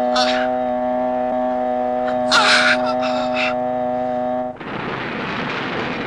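A man's anguished screams over a held, sustained chord of horror-film music. About four and a half seconds in, the chord cuts off and a loud, steady rush of noise takes over.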